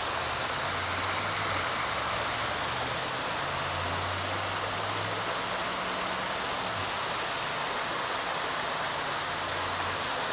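Steady rushing of flowing water, even throughout, with a faint low hum beneath it.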